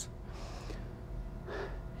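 A man drawing a breath in a pause between phrases, over a steady low room hum, with a short faint voiced sound about one and a half seconds in.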